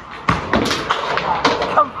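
A mini-bowling ball landing on the lane and rolling into the pins: a run of sharp knocks and clatter.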